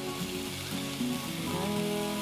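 Chopped onion and minced garlic sizzling steadily in hot bacon fat and olive oil in a frying pan, the first stage of sautéing them for a risotto. Background music plays softly underneath.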